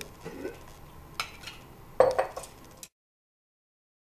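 Metal tongs clinking against a stoneware fermenting crock and a glass jar as sauerkraut is lifted out, with the sharpest clink about two seconds in. The sound then cuts off suddenly into dead silence just before three seconds.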